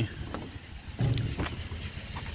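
Hands moving over a wire-mesh frog cage, giving a few light clicks, over a steady low engine-like rumble. A brief low pitched sound comes about a second in.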